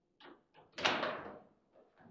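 Table football play: a couple of light clacks of the ball against the rods and figures, then a loud bang just under a second in as the ball is struck hard and slams against the table.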